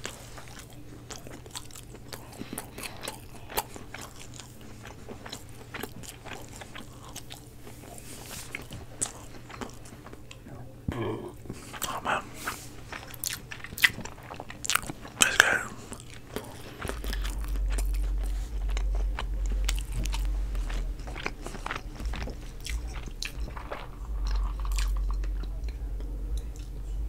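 Close-miked chewing and mouth sounds of someone eating cilantro rice and chicken fajitas, with sharper clicks in the middle as a metal spoon works the rice in a plastic container. A low rumble comes in about two-thirds of the way through.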